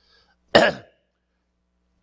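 A man coughs once, a short sudden cough about half a second in.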